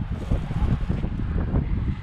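Wind buffeting the camera microphone: an irregular low rumble that rises and falls in gusts.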